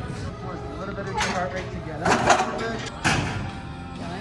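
Gym ambience: background music and voices, with one sharp knock about three seconds in.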